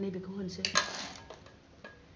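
Metal spatula clattering and scraping against a steel mixing bowl while whipped cream is scooped out. A cluster of clinks comes about half a second to a second in, then a single tap near the end.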